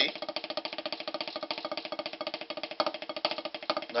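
Drumsticks playing a fast, even double stroke roll on a rubber practice pad set on a snare drum: a steady stream of light, evenly spaced taps.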